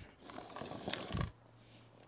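A man's heavy, breathy exhale lasting about a second, then a faint steady low hum.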